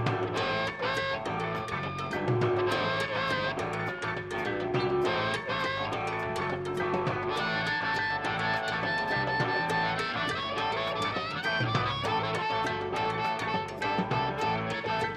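Live blues-rock band playing an instrumental passage: electric guitar, harmonica and drums over a steady beat.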